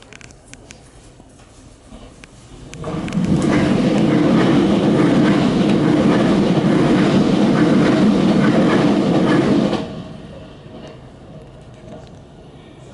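A limited express train running past close by on the adjacent track, heard from inside a stopped train. Its loud, steady rush of wheels and running gear comes up suddenly about three seconds in and drops away abruptly near ten seconds.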